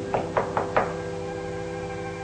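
Three sharp knocks on a wooden door in the first second, over a steady held chord of background music.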